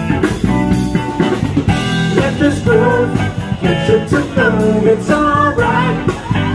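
Live band playing: electric guitars over a drum kit.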